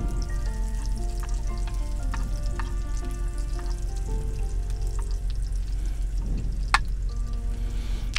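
Chopped garlic sizzling in oil in a small nonstick frying pan as a metal spoon stirs it, scraping and clicking against the pan, with one sharp clink a little before the end. Music with long held notes plays underneath.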